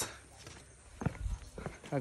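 Footsteps: a few short knocks and scuffs of shoes on a paved path, starting about a second in, with some low rumble from the moving handheld camera.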